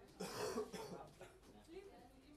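A person's cough, one short burst just under a second long, over faint voices in the room.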